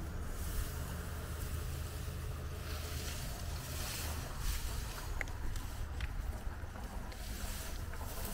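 Steady low rumble of wind buffeting the microphone, with a few faint clicks scattered through it.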